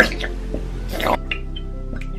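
Classical background music with white school glue glugging and squelching out of a squeeze bottle into a plastic bowl. The loudest squelch comes right at the start and another about a second in.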